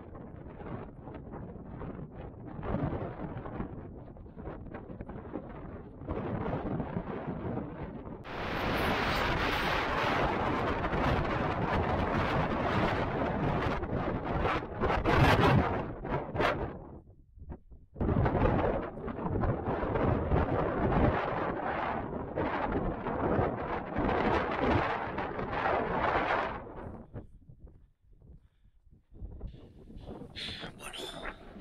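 Gusty wind buffeting the camera microphone, a rough rumbling noise that swells and falls in gusts. It is strongest from about eight seconds in, and drops away briefly after about seventeen seconds and again near the end.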